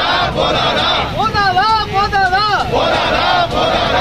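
Protest crowd chanting slogans in call and response: the crowd shouts a line together, a single leader shouts the next line, and the crowd answers again near the end.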